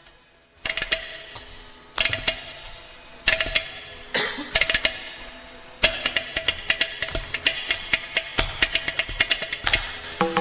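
Carnatic classical instrumental music from a veena-led ensemble with mridangam, ghatam and morsing. A brief gap is followed by phrases of sharp plucked and struck notes that ring on, then a fast, dense run of strokes from about six seconds in.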